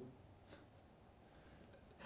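Near silence: faint room tone with a single faint click about half a second in.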